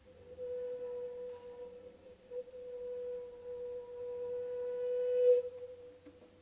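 One held bowed note, steady and pure with a faint ring of overtones, that swells toward the end and then breaks off, leaving a brief fading tail.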